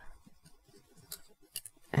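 Faint clicks and ticks of a Bandai 1/144 High Grade Death Army plastic model kit being handled, a few short ones about a second in and again about half a second later.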